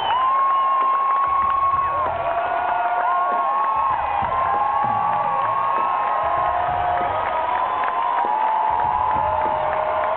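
Electric guitar solo through the PA: long sustained notes with string bends sliding between pitches, over the band's low end. The arena crowd cheers and screams throughout.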